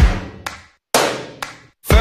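Background music: the drum intro of a pop-rock song, heavy hits about a second apart, each dying away into a short silence, just before the vocal comes in.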